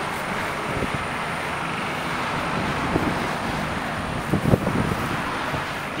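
Steady, fairly loud outdoor rushing noise, with a few faint low thumps about halfway through and again near the end.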